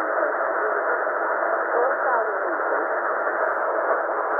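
Shortwave receiver in upper sideband on 11253 kHz giving steady static hiss, held to a narrow voice-band range, with the faint voice of a UK military Volmet aviation weather broadcast barely rising out of the noise.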